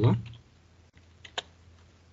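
A few faint keystrokes on a computer keyboard as text is typed, with one louder key click about a second and a half in.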